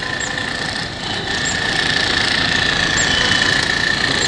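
Steady outdoor background noise with a constant high-pitched whine and a few faint, short high chirps.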